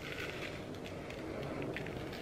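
Dry all-purpose seasoning shaken from a plastic spice jar onto raw oxtails in a plastic bowl: a faint sound with light, scattered short ticks.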